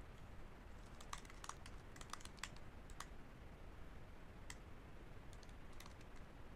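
Faint computer keyboard typing: irregular keystrokes, a quick run between about one and three seconds in, a lone key a little later, and a few more near the end.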